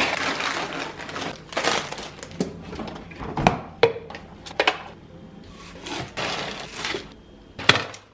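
Irregular knocks, clatter and rustling from putting a plastic blender cup down on a kitchen counter and handling bags of leafy greens to fill it, with one sharp knock near the end.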